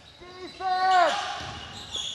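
Live court sound of a basketball game in a gym: a ball bouncing on the hardwood floor, with a short, high two-part shout from the court, the second part falling in pitch at the end.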